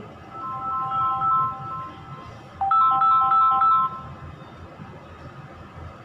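An electronic ringtone melody of short, steady beeping notes: a quieter phrase about half a second in, then a louder repeat of the phrase from about two and a half to four seconds.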